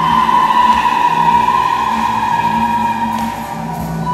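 Women's choir singing in church, holding one long high note for about three and a half seconds before it drops away, over steady low accompanying notes.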